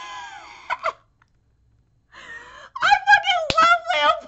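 A woman laughing: a laugh falls away and fades in the first second, then after a short pause high-pitched laughter starts again about three seconds in.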